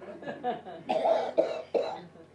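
A man coughing, three short coughs in quick succession about a second in.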